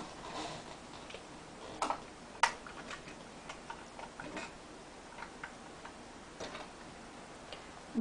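Scattered light clicks and taps of small makeup items being picked up and handled, irregularly spaced, the two sharpest about two and two and a half seconds in.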